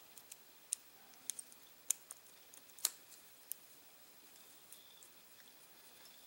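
Faint, scattered metal clicks and taps of a small screwdriver tip working against an AR bolt carrier while pushing the firing pin retaining pin through its holes, the loudest click about three seconds in.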